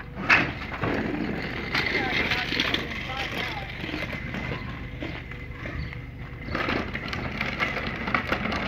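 A steady, rough rolling rumble of wheels, with a sharp click near the start and faint voices.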